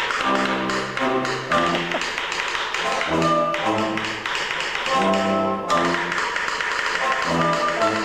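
Brass band playing an upbeat piece in short, punchy repeated chords, with trombones among the brass and crisp percussion taps keeping a steady beat.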